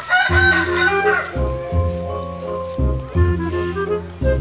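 A rooster crows once, a call of a little over a second at the start, over background music with a steady repeating beat.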